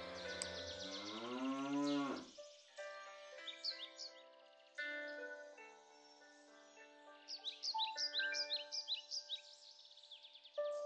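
A cow mooing once, a long call that rises and then falls in pitch, ending about two seconds in. After it, soft music with held notes, with birds chirping near the end.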